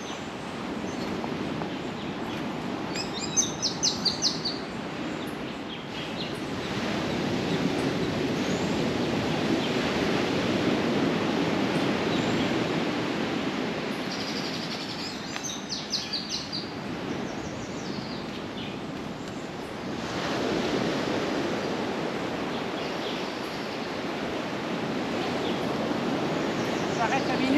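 Surf washing on the shore, a steady noise that swells and fades over several seconds. A bird calls twice, each time a quick series of about half a dozen high notes, a few seconds in and again about halfway through.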